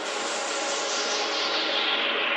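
Progressive psytrance breakdown: a synthesized noise sweep falling steadily in pitch over sustained synth chords, with the bass and kick filtered out.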